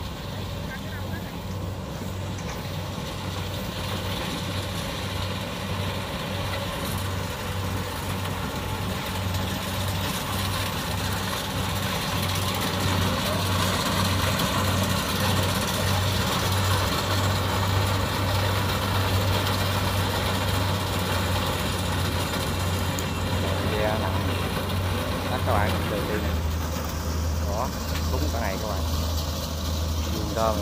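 Kubota combine harvester running steadily as it cuts rice, a low engine drone with the rush of its cutter and threshing works, growing louder over the first half as it draws nearer.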